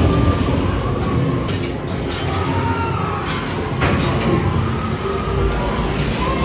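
Loud ambient soundtrack of a haunted-house maze: a steady, dense mechanical rumble with a few sharp bursts of noise.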